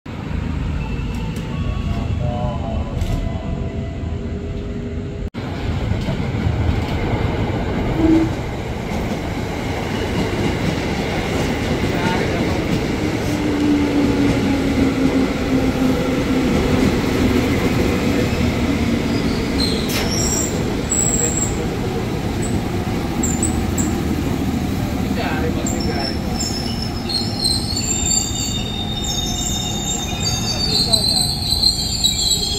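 Ex-JR East 205 series electric commuter train moving slowly alongside a station platform, with a steady rumble of wheels on rail. A low whine falls slightly in pitch midway, and high-pitched wheel squeal builds over the last few seconds.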